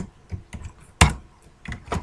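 Typing on a computer keyboard: a run of irregular key clicks, the loudest about a second in.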